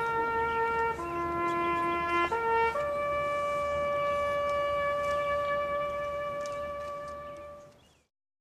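A solo bugle plays a slow call of long held notes. The first note drops to a lower one about a second in, climbs back briefly, then rises to a long high note that fades out near the end.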